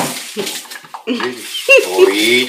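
Voices talking, with a short laugh near the end, over a faint sizzle of food frying in a pot.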